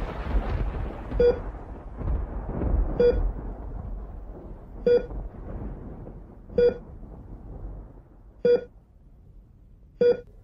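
A hospital patient monitor beeps slowly and evenly, one short mid-pitched tone about every two seconds. Beneath it a deep rumble slowly fades away.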